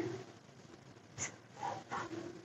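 Quiet pause with a few faint sounds from the speaker's breath and mouth: a short click about a second in and a soft breath near the end.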